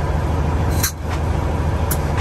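Peterbilt truck's diesel engine idling steadily, heard inside the cab as a low rumble, with a couple of light clicks about a second in and near the end.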